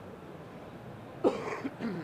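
A man coughs twice about a second in, two short rough coughs, over a steady low background noise.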